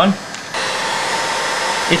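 Electric heat gun blowing hot air, a steady rush of air with a faint whine; it gets louder about half a second in.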